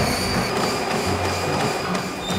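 Background music with a steady rushing noise laid over it.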